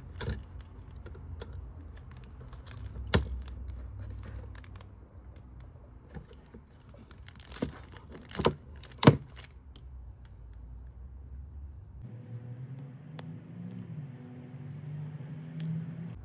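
Handling sounds from a small plastic filament splicer and the filament being worked in it: a few sharp clicks and taps, the loudest about nine seconds in, over a low rumble that drops away at about twelve seconds.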